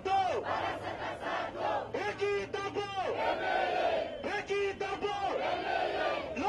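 Crowd of protesters chanting slogans together, loud shouted phrases repeated one after another.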